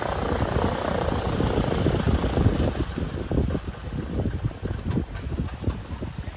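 Light floatplane's propeller engine running at low power as it taxis in on the water, an uneven low putter.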